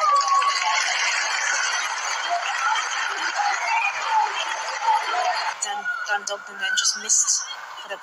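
Players shouting and calling out on the pitch during a goalmouth scramble, a dense, loud mix of voices in an empty stadium that cuts off about five and a half seconds in.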